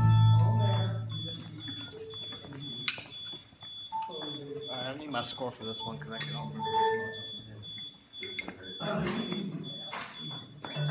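A sustained low keyboard chord dies away over the first second or so, then faint background talking follows, with a faint, high-pitched electronic beep repeating throughout.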